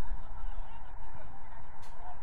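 Low wind rumble on an outdoor microphone, with a few faint, distant honk-like calls over it.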